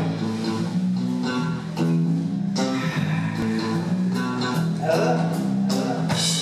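Live band playing electric guitars and bass guitar together in a repeating riff.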